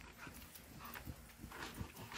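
Faint towel rubbing over a wet German Shepherd's coat, with scattered light taps from the dog's claws shifting on wooden deck boards.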